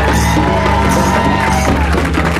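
A live band playing, with congas, drum kit, electric bass and guitar.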